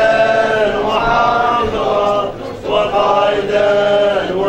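A man chanting Arabic devotional recitation in long, drawn-out melodic phrases: two held phrases with a short break about two and a half seconds in.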